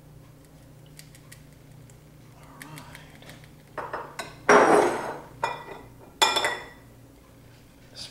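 A glass sauce jar clinking and knocking against a glass baking dish as the last spaghetti sauce is emptied out. Quiet at first, then about five knocks a little over halfway through, several with a glassy ring, the loudest near the middle.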